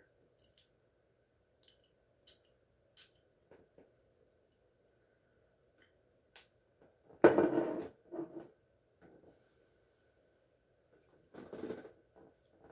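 Perfume spray atomizer giving a few brief hissing spritzes in the first three seconds. Louder short sniffs follow about seven seconds in and again near the end, as the sprayed scent is smelled.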